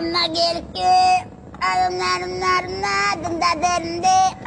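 A song with a high, child-like singing voice holding long, steady notes, broken by short pauses.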